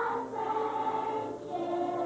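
A children's choir singing a slow tune with held notes.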